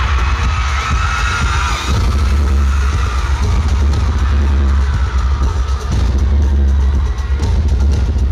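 Loud live concert music with a heavy bass beat, recorded from the audience, with high fan screaming over it that fades after the first few seconds.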